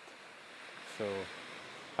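A soft, even wash of small waves on a stony shore, swelling a little in the second half, with a man's single word "So" about a second in.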